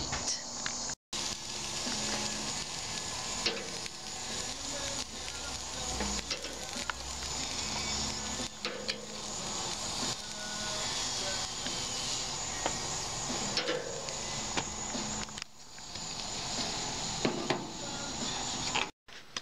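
Hot dogs sizzling on a barbecue grill grate, a steady hiss broken by occasional sharp clicks of metal tongs turning them.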